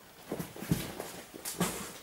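Whole hides of full-grain small-livestock leather being handled, rustling and flapping in a few short strokes, two of them with a soft thump.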